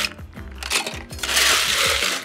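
Ice cubes clattering against a metal scoop and a steel cocktail shaker tin as ice is scooped and poured in, a short burst near the start and a longer one from just under a second in.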